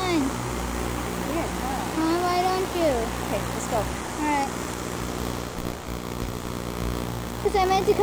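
Indistinct voices, a few brief words about two seconds and four seconds in, over a steady low hum.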